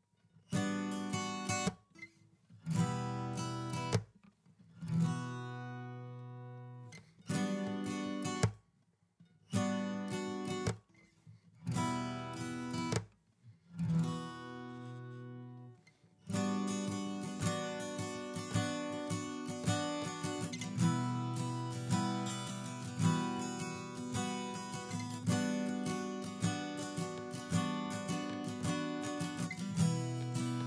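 Acoustic guitar music. For the first half it comes in short chopped phrases, each chord left ringing and broken by sudden silent gaps. From about halfway the plucked guitar runs on without a break.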